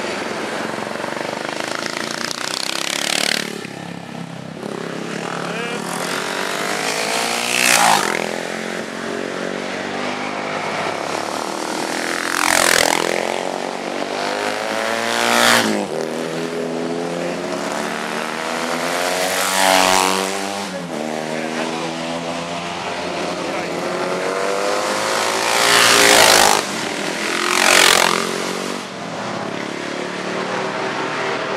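Classic racing motorcycles passing a corner at speed, one after another, with about seven loud pass-bys. On each, the engine note climbs in level and drops in pitch as the bike goes past, and other engines run on in between.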